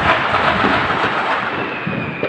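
New Year fireworks: a sudden loud burst that carries on as a long, slowly fading rumble and crackle. A thin steady whistle joins about a second and a half in.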